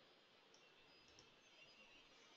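Near silence: room tone, with two very faint clicks, one about half a second in and one just past a second.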